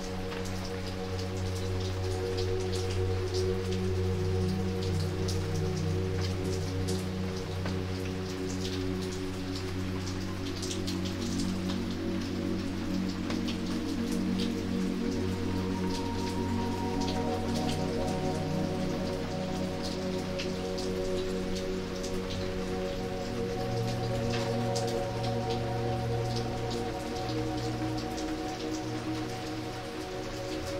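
Steady rain falling on wet pavement, with many separate drops spattering, over slow, soft ambient music of long held notes. The notes shift to a new chord around the middle and again later on.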